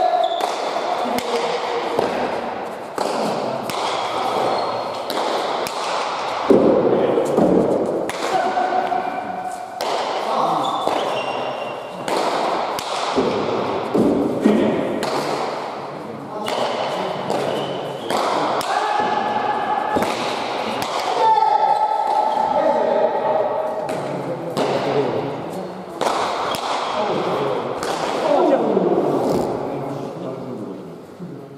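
Basque pelota rally: the ball hit again and again and smacking off the walls and floor of an indoor court, each impact echoing in the hall, with players' voices calling out between shots.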